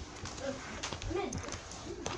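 Faint, quiet child's voice making brief murmurs, with light clicks and knocks from the camera being handled.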